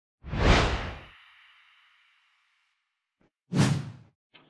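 Two whoosh sound effects for a title intro: a loud, deep one just after the start whose thin shimmering tail fades away over about two seconds, then a shorter whoosh near the end.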